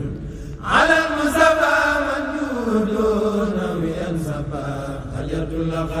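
Chanted Arabic devotional verse (a Murid xassida), carried over loudspeakers. A new phrase starts under a second in on a long held note that slowly falls in pitch, and the chanting runs on in drawn-out lines.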